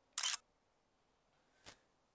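Smartphone camera shutter sound as a photo is taken: one short snap about a split second in, then a faint click near the end.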